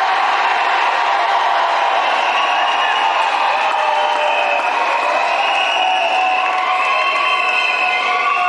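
A congregation praying aloud all at once: many voices overlapping into a loud, steady din, with no single voice standing out.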